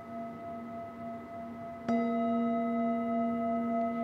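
Metal Tibetan singing bowl resting on a knee, ringing steadily as an earlier strike fades, then struck once with a padded mallet just under two seconds in and ringing on with several clear tones.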